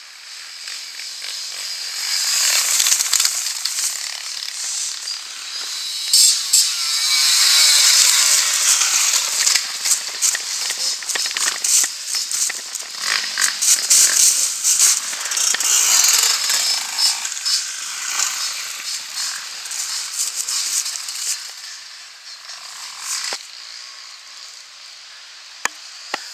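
Off-road motorcycle engines revving hard as riders pass close by, the sound building over the first few seconds, staying loud and uneven with rising and falling revs, then fading away about twenty seconds in.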